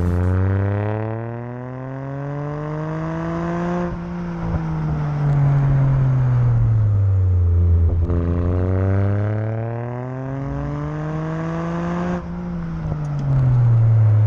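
Car exhaust heard from right beside the tailpipe as the car drives: the engine note climbs in pitch for about four seconds under acceleration, then falls away as the revs drop, and the same climb and fall happens a second time.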